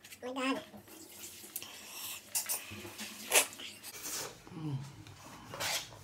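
A man's wordless pained moans and hums while eating very spicy noodles, one near the start and a falling one near the end. Two short sharp sounds break in, the louder about halfway through and another near the end.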